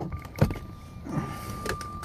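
A 2002 Jaguar XKR's cabin with its engine off but its electrics still live: a steady high electronic warning tone, a sharp knock about half a second in, and a brief electric motor whirr like a power window moving.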